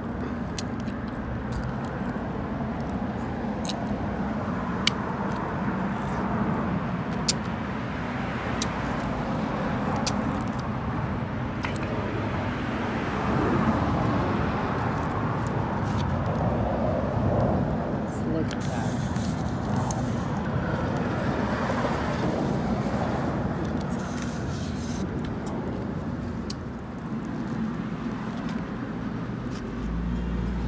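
Steady street traffic noise from cars driving past, with a few short sharp clicks in the first half.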